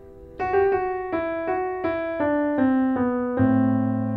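Piano playing a quick right-hand melody of about eight single notes stepping down (F sharp, G, F sharp, E, D, C, B, C), starting about half a second in. Near the end a low A in the left hand joins under the final C, and both ring on together.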